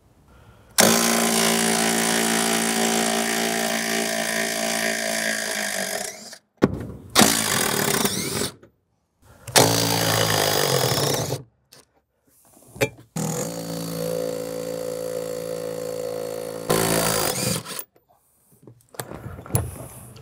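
Cordless power tool spinning an 18 mm socket to remove the passenger seat's mounting bolts, in four separate runs with short pauses between: the first and last runs are the longest.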